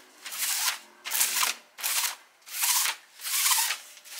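Sticky lint roller rolled in repeated strokes over a fabric backpack cover, a crackling rasp on each of about five strokes.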